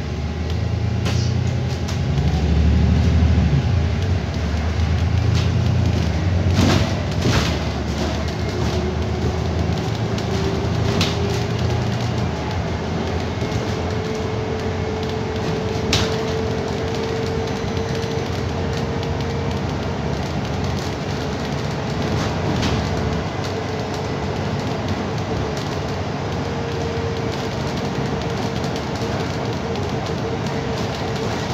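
Interior ride noise of a moving London bus: a heavy drivetrain rumble, strongest over the first dozen seconds, then a steady whine that climbs slightly and holds, with a few rattles and knocks from the body.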